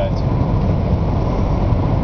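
Inside a car cruising on a motorway: a steady low rumble of road and driving noise.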